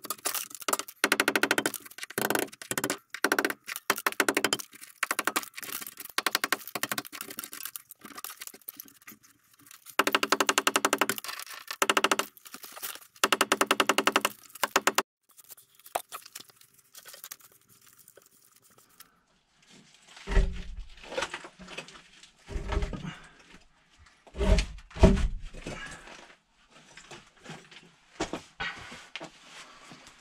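A power chisel or hammer drill hammering into brick in stuttering bursts, cutting out the back half of the brick behind a lintel. About halfway through it stops, and after a pause come several heavy thumps and scrapes as broken brick is knocked loose.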